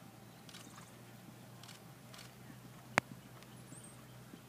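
A single sharp click about three seconds in, over a faint background with a low steady hum.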